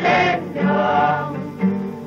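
Music with a choir singing sustained notes in short phrases.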